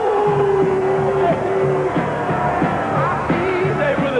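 Rock music with a steady low beat and a singing voice, opening on a long held note in the first second.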